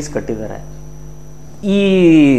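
Steady electrical mains hum in the audio, heard bare during a pause in a man's speech. The man's voice returns near the end with a long drawn-out syllable falling in pitch.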